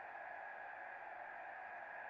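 Faint, steady background hiss with no distinct sounds: room tone.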